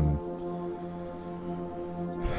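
Slow background music: a held chord of sustained low notes, steady for the whole stretch.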